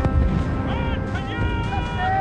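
Film soundtrack of a battle: score music over battle noise, with a heavy thump right at the start and low rumbling throughout.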